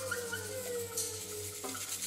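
Live electro-acoustic ensemble music in a free passage: several sliding, falling pitches over a held low note, with a hissy high noise coming in about a second in.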